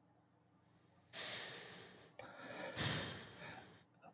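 A person breathing audibly close to the microphone: a short breath about a second in, then a longer one that fades out just before the end.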